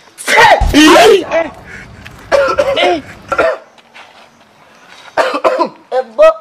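A man's voice in three short, wordless outbursts.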